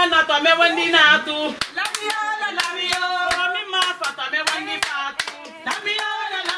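Hand clapping at a steady beat of about two to three claps a second, starting about one and a half seconds in, under a voice singing long wavering notes.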